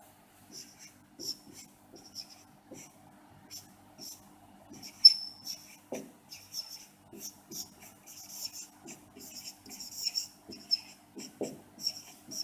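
Marker pen writing on a whiteboard: a run of short scratchy strokes and taps as the letters and symbols are written, with one brief high squeak about five seconds in.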